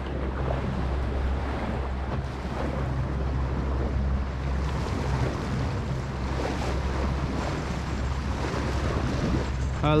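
A boat's engine runs with a steady low hum, mixed with water washing past the hull and wind buffeting the microphone.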